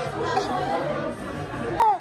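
Several people's voices chattering over one another, with no single clear speaker. One sharp click or knock near the end.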